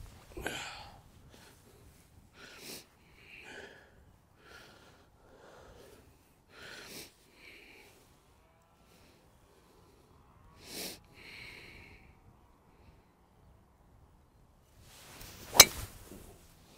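Golf driver striking a teed-up ball once: a single sharp crack near the end. Before it, a few short breathy noises.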